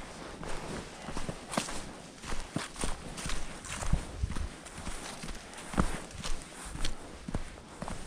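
Hiker's footsteps on a dry dirt trail covered with fallen leaves and pine needles, a steady walking pace of about two steps a second, each step a crunch of leaves and grit.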